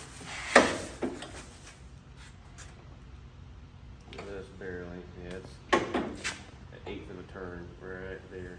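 Knocks and clanks from hand-cranking a 1922 Mack AB truck engine that does not catch. A sharp knock comes about half a second in, and a quick run of clacks about six seconds in.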